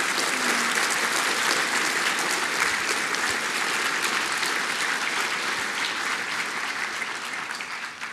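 Audience applauding steadily at the end of a conference talk, dying away near the end.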